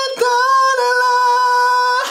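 A man singing unaccompanied in a high voice, finishing a lyric line ('…合えた'): a short note, a brief break, then the last syllable held on one steady high note.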